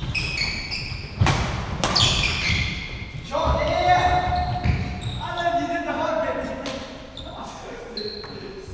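Badminton rally: rackets crack against the shuttlecock, and shoes squeak and pound on the wooden court floor, echoing in a large hall. The sharp hits cluster in the first two seconds.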